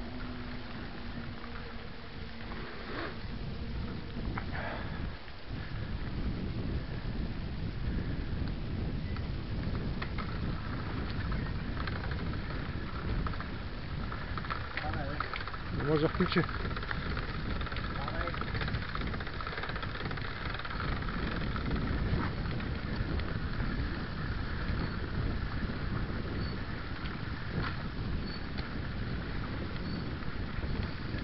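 Bicycle riding along a forest dirt trail, heard from a camera on the bike: a steady rumble of tyres, rattle and wind on the microphone, with a few sharp knocks from bumps. A brief voice-like call stands out about sixteen seconds in.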